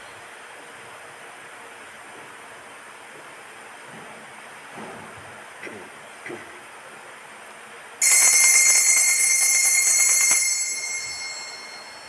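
A small metal altar bell rings out suddenly about eight seconds in, bright and high-pitched, holding for about two seconds and then fading away. Before it there is only faint room tone with a few soft knocks.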